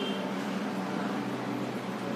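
Steady background hum with an even hiss, unchanging throughout.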